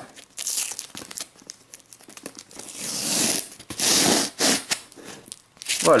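Clear packing tape being peeled and ripped off a cardboard box, in a series of rasping tears, the longest and loudest around three and four seconds in.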